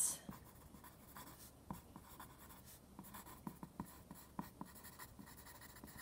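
Pencil writing on lined notebook paper: faint scratching strokes broken by short ticks at uneven intervals as the letters are formed.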